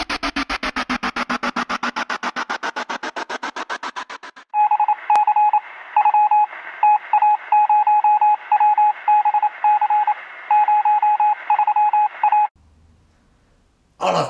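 Title-sequence sound effects: a fast, evenly pulsing electronic sound with a slowly falling tone, then a Morse-code-style beeping tone keyed in long and short stretches over a thin, radio-like hiss. The beeping stops about a second and a half before the end.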